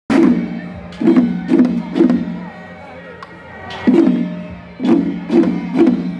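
Procession drums beaten in a repeating pattern: one stroke, then three more about half a second apart, each stroke ringing briefly. A short laugh comes near the end.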